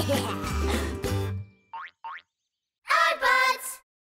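Cartoon background music with a bass line that stops about a second and a half in, followed by two quick rising whistle-like glides. Near the end comes a short burst of a cartoon character's voice.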